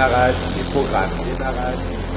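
Fragments of a voice from a spoken start-up announcement, over a steady low electronic hum.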